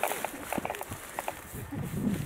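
Footsteps running through grass, a few light thuds in the first second or so, then quieter.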